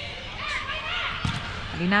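Indoor volleyball arena crowd noise with faint shouting, and one dull thump of a volleyball being struck about a second and a half in during a rally.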